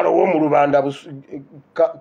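Speech only: a man talking, with a brief lull about a second in.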